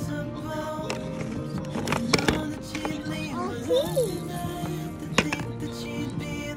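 Background music with steady sustained notes. About two seconds in and again past five seconds there are a few sharp clicks, and near the middle a voice briefly slides up and down in pitch.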